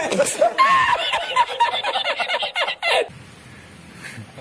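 A man laughing, a long string of quick laughs that stops abruptly about three seconds in. Faint room noise follows.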